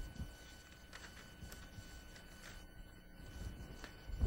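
Quiet room tone with a faint steady electrical hum, a low thump right at the start, and a few faint clicks and knocks of objects being handled on a bench.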